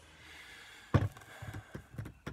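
A plastic jug of liquid is set down with a single sharp thump about a second in, followed by a few lighter knocks as it is handled.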